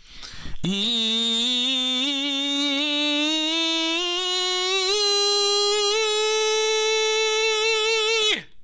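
A tenor singing one sustained vowel into a nasometer mask, starting with a quick breath and then sliding slowly up in small steps from around E4 to A4, through the tenor passaggio. He holds the top note with a light vibrato until it cuts off near the end.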